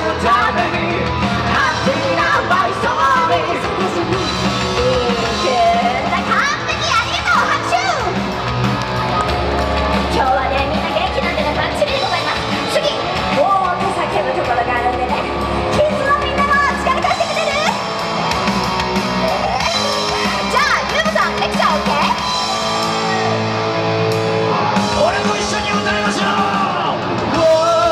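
Live Japanese rock band playing loudly: a woman singing into a microphone over electric guitar, amplified through the stage's PA speakers.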